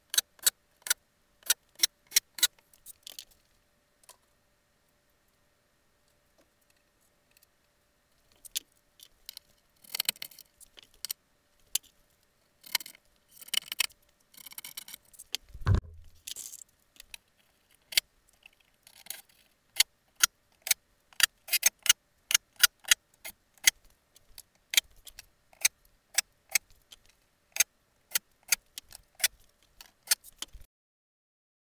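Clicks, taps and knocks of hands and tools working on wooden wall panels and track, coming in quick irregular runs with a pause of a few seconds, and one duller thump about two-thirds of the way in.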